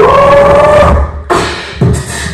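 Loud hip-hop music at a live stage show: a long held note slides up at the start and holds for about a second, the music drops out briefly, then the beat comes back.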